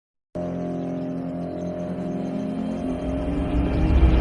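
A car engine running with a steady drone, then revving and growing louder toward the end, used as a sound effect to open the music track. It starts a moment after a brief silence.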